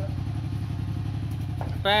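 Honda Supra Fit 110cc motorcycle engine idling steadily, a low even putter.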